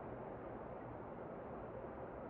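Heavy rain falling steadily, heard faint and dull, with no high hiss.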